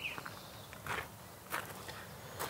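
Footsteps on gravel: three faint steps about two-thirds of a second apart.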